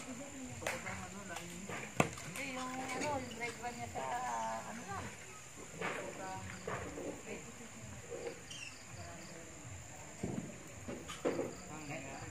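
Wood fire of glowing embers and logs giving a few sharp pops, the loudest about two seconds in. A steady high whine runs under it.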